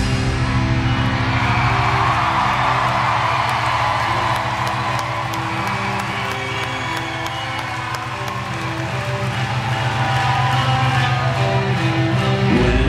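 Live rock band playing over a PA: after about three seconds the bass and drums drop away, leaving an electric guitar holding ringing chords over a light, steady ticking. A crowd cheers over the first few seconds, fading out.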